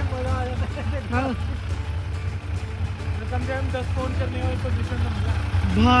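Faint voices talking in the background over a steady low rumble.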